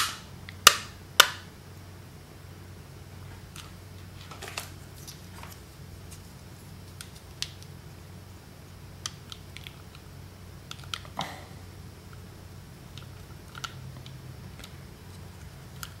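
Small plastic kit parts clicking as plastic feet are pushed onto thin metal legs: three sharp clicks in the first second or so, then scattered faint clicks and handling noises.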